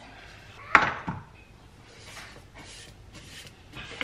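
A single sharp knock about a second in, then a few faint scrapes of a spatula and spoon against a steel mixing bowl as thick chocolate-nut paste is scraped down.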